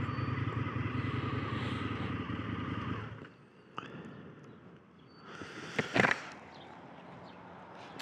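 A 2019 Indian FTR 1200S's V-twin engine idling in neutral, then switched off about three seconds in. A single click and a short burst of handling noise follow.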